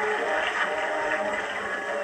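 High school marching band playing, holding sustained notes.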